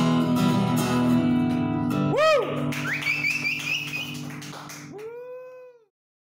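The final chord on an acoustic-electric guitar rings out and fades. Short rising-and-falling calls come over it about two seconds in and again near the end, with a warbling high whistle in between, before the sound cuts off suddenly.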